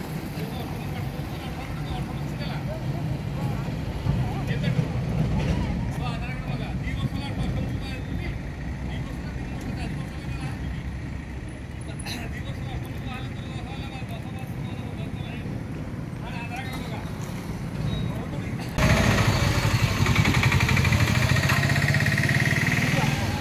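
People talking back and forth at a roadside, with vehicle noise in the background; the sound becomes abruptly louder near the end.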